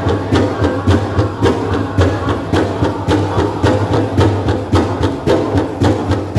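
Powwow drum group singing a song over one big shared drum struck in a steady beat, a little under two beats a second.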